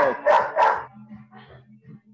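A dog barking about three times in quick succession in the first second, then stopping.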